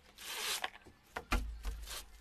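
Small objects handled close by: a short scratchy rub lasting about half a second, then several sharp clicks and a couple of low bumps, as a makeup compact is picked up and opened.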